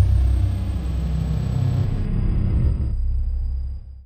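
Deep cinematic rumble of a title-card sound effect: a low boom that sets in sharply, holds, and fades away near the end, with a faint high tone gliding down at its start.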